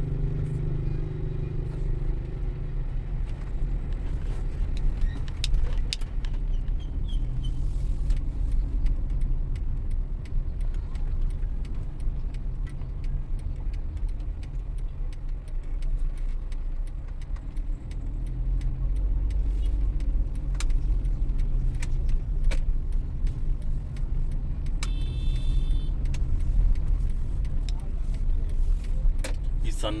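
A car driving on a city road, heard from inside the cabin: a steady low rumble of engine and road noise, with small clicks and rattles. A short high-pitched tone sounds near the end.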